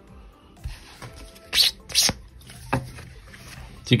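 A few short rustles of a paper scratch-off lottery ticket being handled, three brief crisp sounds in the middle of an otherwise quiet stretch.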